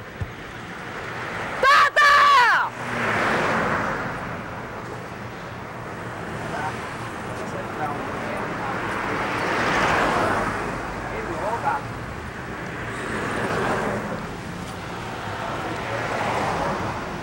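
A woman's loud scream lasting about a second, shouted at close range into a bystander's ear, falling in pitch at the end. Afterwards, street traffic passes, its noise swelling and fading several times.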